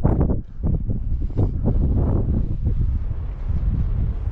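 Wind buffeting the microphone: a loud, gusting low rumble that swells and dips unevenly.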